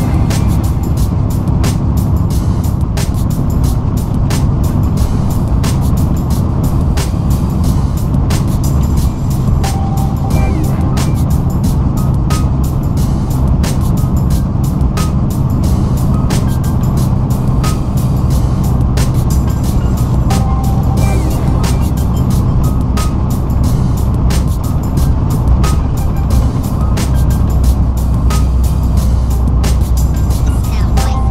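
Semi-truck engine running steadily at highway speed, heard from inside the cab, with music playing over it with a steady beat.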